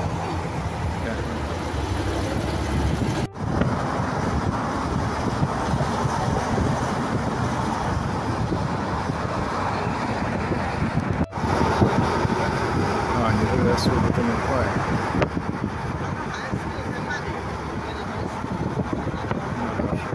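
Steady outdoor noise at a lakeshore, mostly wind on the microphone with traffic behind it and faint voices of people nearby. The sound cuts out briefly twice, about 3 and 11 seconds in.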